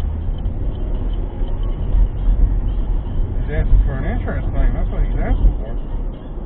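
Steady low rumble of road and engine noise inside a car cabin at highway speed, with a voice talking indistinctly from about three and a half seconds in until near the end.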